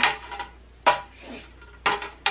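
A clear cake tray and glossy rectangular trays knocking together as they are handled and set down. There are three sharp clacks about a second apart, each with a brief ring.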